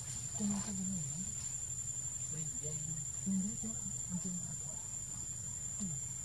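Insects in the forest, making a steady, high-pitched drone on a single tone.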